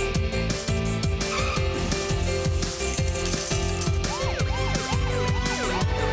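Upbeat theme music for a TV show's opening titles, with a steady quick beat under sustained tones. From about four seconds in, a run of quick whistle-like pitch glides loops up and down over it.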